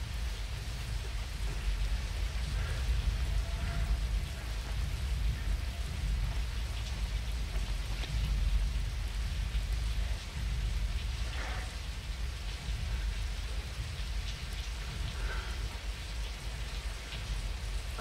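Heavy rain falling steadily, an even hiss over a deep continuous rumble.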